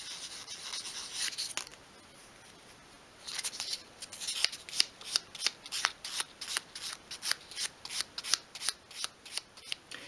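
Sandpaper rubbing by hand on the sawn end of a small wooden spindle piece. A continuous rub for the first second and a half, a short pause, then quick short strokes at about three a second to the end.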